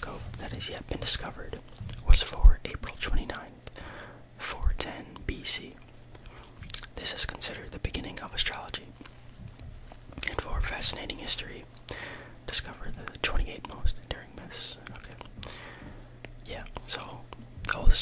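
A man whispering close to the microphone, ASMR-style.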